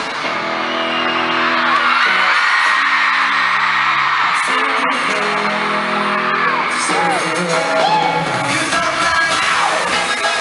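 Live pop band and singing amplified through an arena PA, recorded from the audience, with fans screaming over it throughout. The deep bass drops out for most of the middle and returns near the end.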